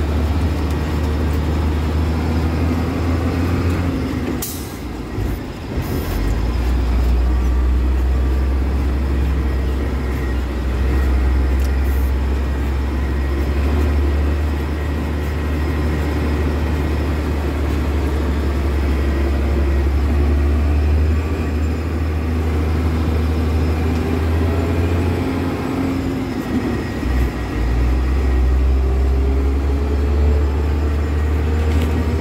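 Truck engine running under way, heard from inside the cab: a steady low drone that dips briefly with a short sharp hiss about four to five seconds in, then picks up again, and rises in pitch as it accelerates near the end.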